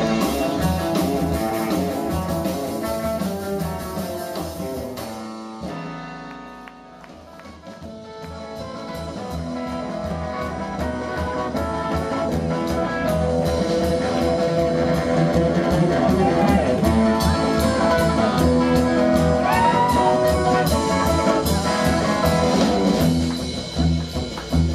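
Live rockabilly trio playing an instrumental passage: hollow-body electric guitar over upright bass and drum kit. About six seconds in the band drops down to a quiet stretch, then builds back up to full volume.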